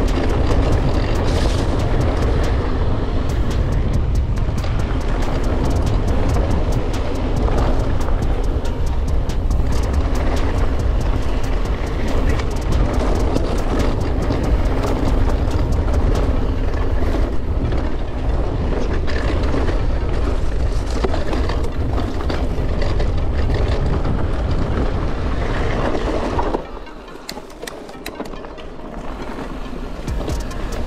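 Mountain bike descending a rocky trail: a heavy rumble of wind on the camera microphone under constant clattering and knocking of tyres and frame over stones. About 26 seconds in, the wind rumble drops off sharply as the bike slows.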